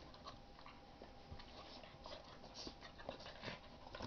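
Faint scuffling of a bulldog puppy and a basset hound–pug mix play-fighting: scattered light clicks and rustles from paws and mouths.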